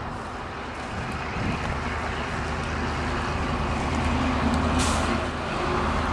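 A motor vehicle passing on the road: a steady engine hum and tyre noise that grow gradually louder.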